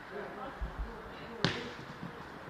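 A football kicked once, a single sharp thud about one and a half seconds in, with faint players' calls around it.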